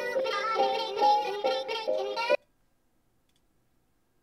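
Preview of a pitched-up 'helium' vocal loop sample in E minor, high wavering sung notes over a musical backing, cut off suddenly about two and a half seconds in, leaving near silence.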